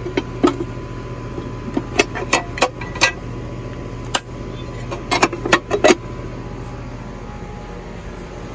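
Sharp metal clicks and clacks from the sheet-metal cover of an outdoor AC disconnect box being flipped open and handled while the power is shut off. They come in clusters: about half a second in, around two to three seconds in, and around five to six seconds in. A steady low hum continues underneath.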